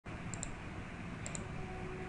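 Two quick double-clicks of a computer mouse, about a second apart, over a low steady background hiss.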